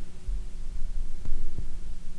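Dull low thumps of handling at the tying bench over a steady hum, with two faint clicks a little after a second in.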